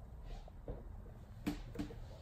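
Quiet room tone with two light knocks about a second and a half in, close together.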